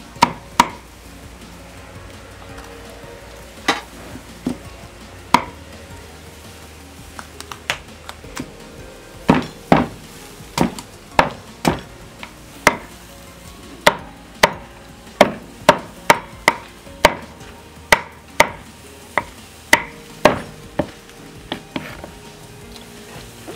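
Cleaver chopping through roast pork and bone on a wooden chopping block: a few scattered chops at first, then a steady run of chops about two a second through the second half.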